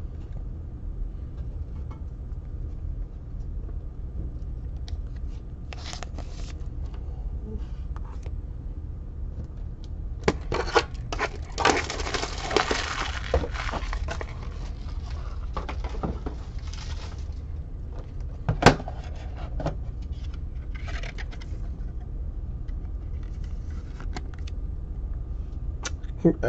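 Handling noises at a table: intermittent rustling and scraping of trading cards and their packaging, with one sharp click a little over halfway through, over a steady low hum.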